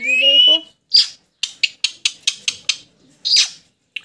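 Pet plum-headed parakeet whistling and calling. A rising whistled note opens, then a sharp high squawk, a quick run of about eight short clicking chirps, and another squawk.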